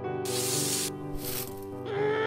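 Two short hissing whoosh sound effects, the first lasting most of a second and the second about half a second, over a held chord of background music.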